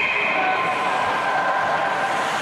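A referee's whistle held in one long, steady blast that fades out a little over a second in, over a steady hiss of ice-rink noise. The whistle stops play after the goalie's save.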